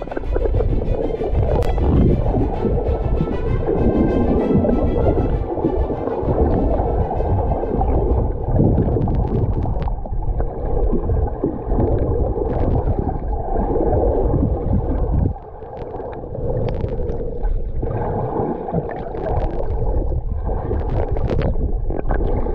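Muffled underwater sound from a submerged camera: water churning and gurgling, with scattered clicks, under background music.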